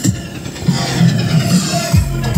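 Electronic background music whose drum beat breaks off for a rising sweep. A motorcycle engine runs underneath it.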